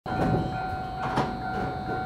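JR East E131-500 series electric multiple unit standing at the platform before departure, its equipment giving a steady high electrical whine over a low rumble, with a few sharp clicks.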